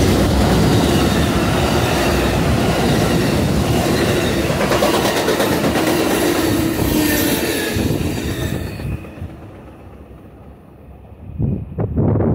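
Amtrak Superliner bi-level passenger cars rolling past, steel wheels running on the rails, until the last car goes by about eight to nine seconds in and the noise dies away. A short loud low bump near the end.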